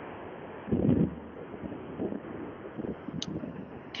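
Background noise from an unmuted participant's microphone on an online call: a steady, phone-quality hiss with a louder rumble about a second in and a few faint knocks and a click near the end. The presenter thinks it comes from attendees dialled in by phone.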